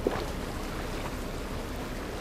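A boat underway on a river: a steady engine rumble and water rushing along the hull, with a brief sharp knock right at the start.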